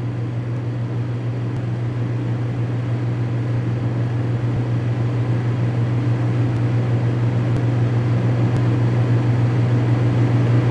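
A steady low hum over a haze of hiss, growing slowly louder, with a few faint clicks.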